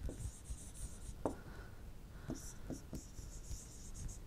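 Stylus writing on a tablet: faint, scratchy strokes come and go, with a few light taps.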